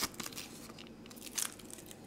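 Light rustling and small clicks of a cardboard box and clear plastic camera back doors being handled, with a sharper click right at the start and another about one and a half seconds in.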